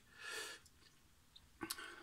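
A man's short breath in the first half-second, then near silence, with faint mouth clicks near the end.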